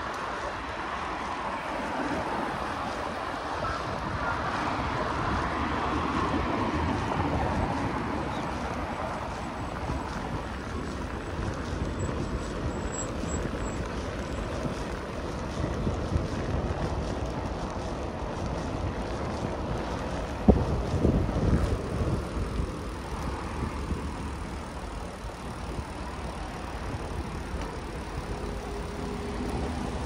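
Wind rumbling on the microphone of a moving road bike, with road traffic going by; one vehicle swells up and fades away over the first quarter. A single sharp knock sounds about two-thirds of the way through.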